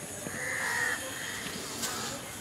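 A bird calling once outdoors, a single drawn-out call lasting about half a second in the first second.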